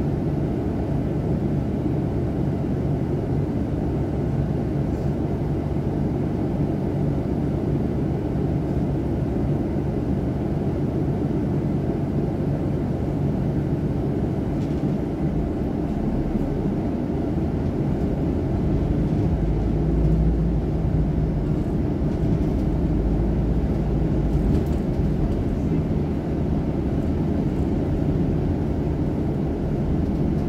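Double-decker bus engine heard from inside the bus: a steady low running rumble while it waits, which grows stronger and a little louder about twenty seconds in as the bus pulls away.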